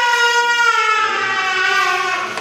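An infant crying: one long wail that slides slowly down in pitch.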